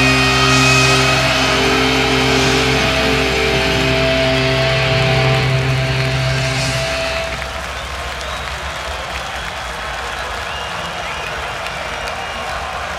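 A black metal band's guitars and synthesizer hold a final sustained chord at the end of the song. It stops about seven seconds in, leaving the crowd cheering and applauding.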